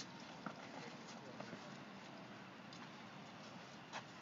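Faint, steady outdoor background noise with a few soft taps.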